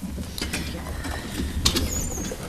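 Several people sitting down at once: office chairs being pulled in and sat into, with scattered clicks, knocks and rattles of the chair mechanisms, the sharpest about one and a half seconds in, and a brief high squeak near the end.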